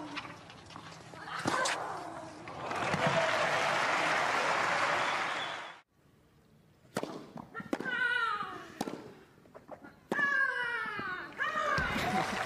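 Crowd applause and cheering, cut off abruptly, followed by a tennis rally: racket strikes on the ball, each met by a female player's loud grunt that falls in pitch.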